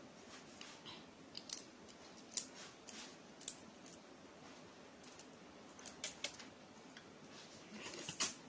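Faint, scattered small clicks and crackles of fingers picking and chipping the cracked shell off a balut (boiled duck egg).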